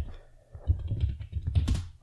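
A short run of computer keyboard keystrokes, starting about half a second in.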